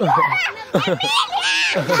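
Young children's voices laughing and calling out, with a high-pitched squeal in the middle.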